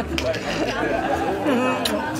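Several people talking over one another: party chatter with no single clear speaker.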